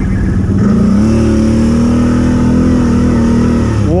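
ATV engine revving up as the quad accelerates about a second in, holding a steady pitch, then easing off near the end.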